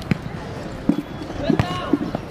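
A football being kicked and bouncing on a dirt-and-grass pitch: a few sharp thuds spread through the two seconds, with players' calls and shouts across the field.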